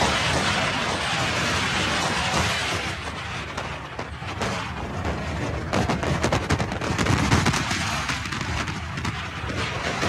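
Wind rushing over the microphone of a phone riding on a moving Can-Am Spyder three-wheeled motorcycle, a steady roar with a run of heavier buffeting thumps from about six to seven and a half seconds in.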